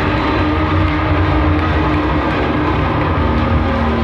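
Rock band playing live in an arena, heard on a muffled, dull-topped concert recording: a dense wall of distorted guitars, bass and drums with held guitar notes.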